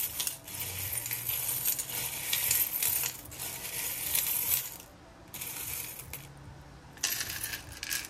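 Hands stirring a ceramic bowl heaped with small metal charms: loud, dense clinking and jingling of metal on metal and on the bowl for nearly five seconds. Then a brief lull, a fainter stretch of clinking, and one more short burst near the end.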